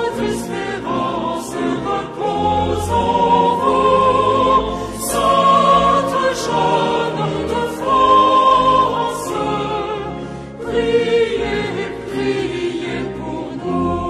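Choir singing a French hymn in long, held phrases.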